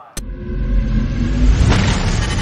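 An engine-rumble sound effect, like a race car revving, starts abruptly with a click and builds in loudness as the logo outro begins.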